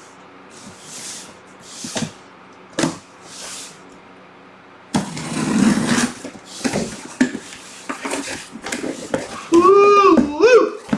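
A cardboard box and its packing being handled and opened by hand: a few separate scrapes and taps at first, then from about halfway a louder stretch of rustling with many clicks and knocks. A man's voice comes in briefly at the very end.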